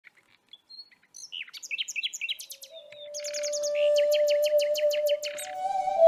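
Birds chirping and twittering in quick, downward-sliding notes that begin about a second in and grow into a fast, even run of chirps. A steady held tone comes in under them about halfway through, the start of an intro music track.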